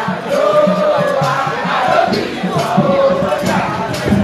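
Crowd of festival-goers singing and chanting together over music, voices sliding in pitch, with a steady low beat underneath.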